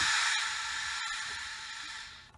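Receiver hiss from a PRC-77 radio played through an LS-671/VRC loudspeaker: a steady rushing noise that fades gradually, with two brief dropouts.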